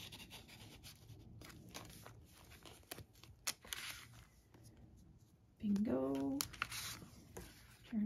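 Paper rustling, sliding and tapping as a card-stock bingo tag is pulled out of a paper tuck and a paper pocket flap is lifted in a handmade journal. A brief vocal sound comes about three-quarters of the way through.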